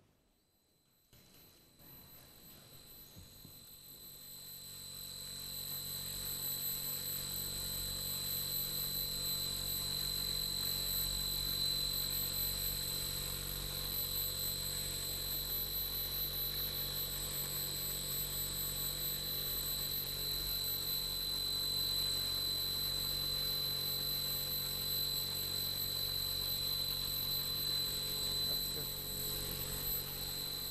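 Intolerable noise of the kind used in torture, played back through the hall's sound system: a steady, harsh drone with a high piercing whine over a low rumble. It fades in over the first several seconds and then holds unchanged.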